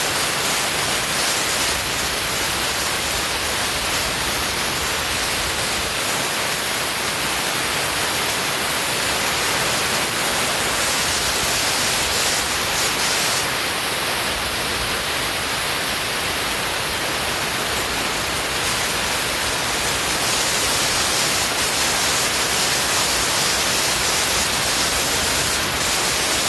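Steady hiss of compressed air from a drywall texture hopper gun.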